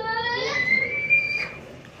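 A high, whistle-like note that glides upward and holds for about a second before fading out.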